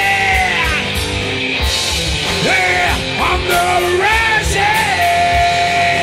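Live rock band playing loud: a male singer belting held, sliding notes into a microphone over electric guitar, bass and drums with a steady kick-drum beat. One long note is held steady near the end.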